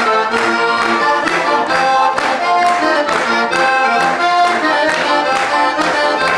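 Heligónka, a Slovak diatonic button accordion, played solo: a brisk folk tune with the melody over steady, rhythmic bass-and-chord strokes.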